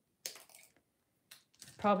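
Two light clicks from jewellery tools being handled on a work table, the first about a quarter second in and a fainter one just past the middle. A woman starts speaking near the end.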